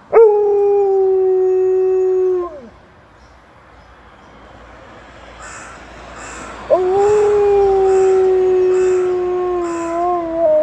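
Alaskan Malamute howling in answer to a passing ambulance siren. There are two long, level howls: the first lasts about two and a half seconds and drops off at the end, and the second starts about seven seconds in and sinks slowly in pitch.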